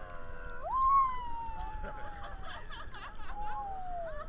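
Voices calling out in long, drawn-out notes that slide down in pitch, the loudest about a second in, over low water and wind noise on a microphone at the water's surface.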